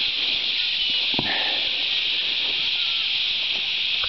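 A steady high-pitched hiss of outdoor background sound, with a faint knock about a second in.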